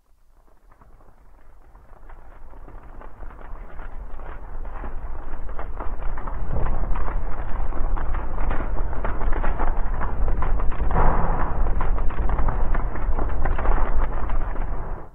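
Dense crackling noise over a deep rumble, with no melody or voice. It fades in over the first six seconds and then stays loud.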